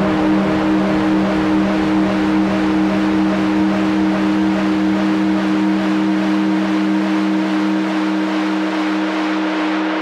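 Synth chord run through Bitwig's Delay+ with feedback pushed past 100% into the hard clipper, sustaining as a steady, loud drone of two low tones under a hissy wash. The low end thins out in the second half as the EQ low cut is raised.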